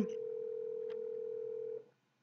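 Telephone ringing tone of an inbound VoIP call: one steady tone at a single pitch that stops shortly before the end.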